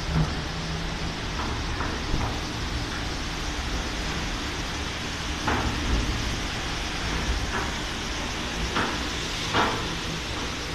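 Ceccato Antares gantry car wash running, its rotating brushes and water spray scrubbing a car with a steady noise over a low hum, broken by a few brief louder thumps.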